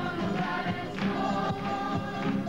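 A large group of children and adults singing together in chorus, over many acoustic guitars strummed in a steady rhythm.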